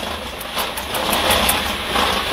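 Dog slatmill running under a Doberman's steady trot: a continuous rumble of the rolling slat belt, with a run of quick light ticks about five or six a second in the first part.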